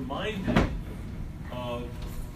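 Brief low talk between people in a room, with a single sharp knock just after half a second in.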